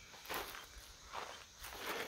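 Three faint footsteps on dry grass and dirt.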